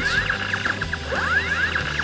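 Electronic sound effects of a battery-powered light-up toy photon saber: two rising sweeping tones, one at the start and one about a second in, over a steady electronic hum, with music underneath.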